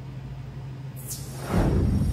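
Edited-in digital glitch sound effect: about a second in, a quick high sweep falls, then a loud low rumble follows.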